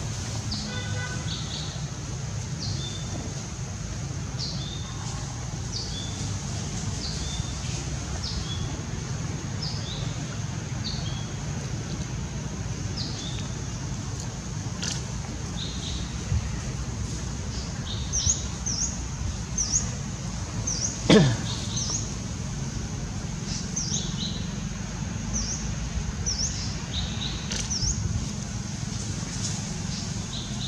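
Birds chirping in short, repeated high calls falling in pitch, roughly one a second and busier in the second half, over a steady high hiss and low rumble. About 21 s in, one loud, sharp sound sweeps steeply down in pitch.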